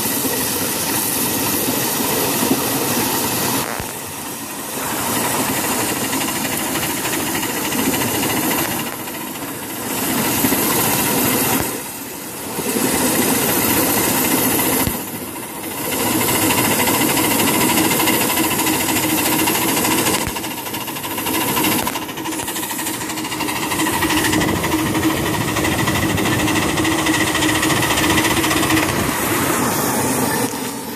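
Ride-on live steam miniature locomotive running along its track: a steady, dense noise of the running gear and steam, dipping briefly several times, with a steadier tone in the last few seconds.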